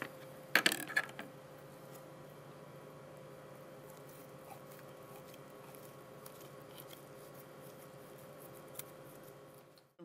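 A short clatter of clicks and knocks about half a second in as a metal coring tube and cooked pork pieces are handled on a plastic tray, then only a faint steady hum with one small click near the end.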